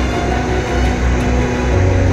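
Jet airliner engine running with a steady low rumble, under sustained background music.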